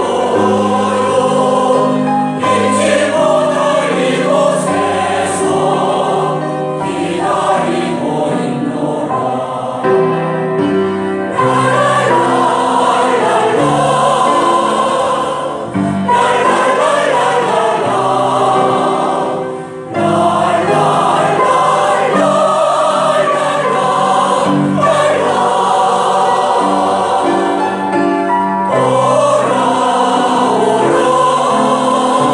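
Mixed-voice senior choir, men and women together, singing a sustained choral piece, with a short break between phrases about twenty seconds in.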